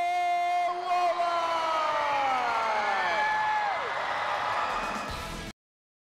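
A man's long, held shout at one steady pitch, then several voices sliding down in pitch and trailing off. The sound cuts off abruptly near the end.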